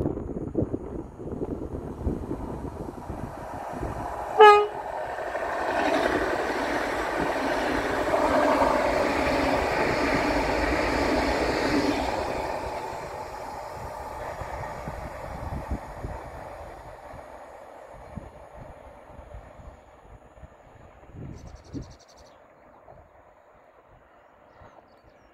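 A PKP Intercity Pendolino (ED250) high-speed electric train gives one short horn blast, then passes at speed. A rush of air and wheels on the rails swells, holds for several seconds and fades away as the train recedes. Low wind noise is on the microphone before it arrives.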